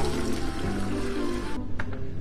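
Background music over water running from an outdoor water filter's opened bottom flush valve into a plastic bucket, a weekly flush that drives dirty water out of the filter. The water sound cuts off suddenly about three-quarters of the way through.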